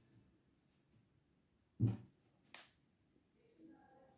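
Handling noise in a quiet room: a single soft thump about two seconds in, then a brief sharp click just after.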